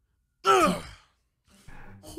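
A single short, breathy "oh" from a voice, falling in pitch, about half a second in.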